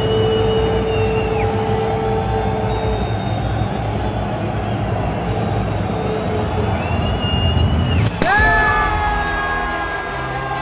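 Large stadium crowd noise with long shrill whistles from the stands, twice. Just after eight seconds a sharp crack is followed by loud, sustained horn-like celebratory tones.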